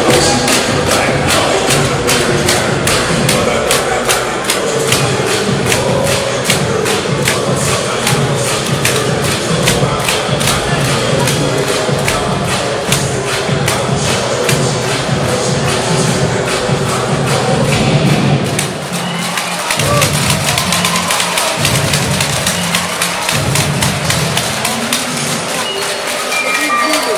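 Dance music with a fast, steady beat played loud over a sports hall's sound system for a cheerleading routine, with crowd noise mixed in. About two-thirds of the way through, the beat breaks off and the music changes.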